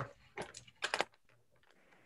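A few quick, faint clicks in the first second, like keys tapped on a computer keyboard.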